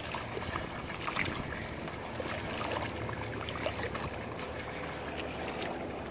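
Splashing and trickling of shallow water as dogs wade and paw in it, with small scattered splashes over a steady rush of noise.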